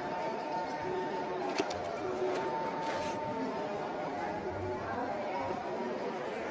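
Steady background chatter of many people talking at once in a crowded hall.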